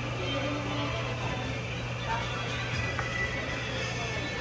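Steady low machinery hum inside the dark ride's show building, with faint music and voices playing over it.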